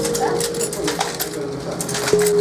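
Rapid clicking and clatter of a hot-metal line-casting typesetting machine as its keyboard is typed on. A held note of background music fades in the first half second, and a few short sliding tones come through.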